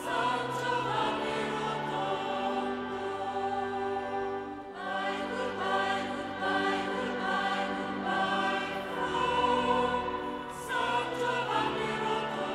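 Background choral music: a choir singing slow, held chords over steady low notes, with a new phrase starting about five seconds in and again near the end.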